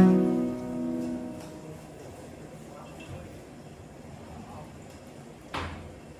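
A song with guitar and singing fades out over the first second and a half. Then faint scratchy rubbing of dry steel wool on window glass, with one sharp knock near the end.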